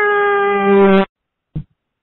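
A man's voice letting out one loud, held yell of about a second at a steady pitch, sagging slightly at the end, then cutting off sharply, followed by a short thump. It comes through a telephone line, thin and capped in the highs.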